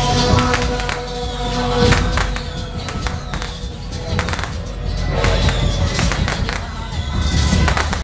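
Taiwanese temple-procession music: suona shawms playing held notes, breaking off about two seconds in and coming back after about five seconds, with drum beats. Clusters of firecrackers pop and crackle irregularly throughout.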